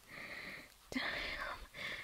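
A woman's breathy, whispered vocal sounds close to the microphone, three in quick succession.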